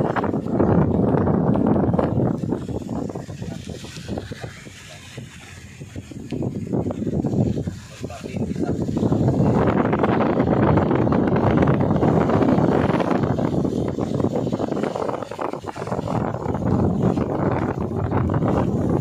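Wind rushing over the microphone of a moving vehicle, with road noise underneath. It eases off for a few seconds about a quarter of the way in, then picks up again and stays strong.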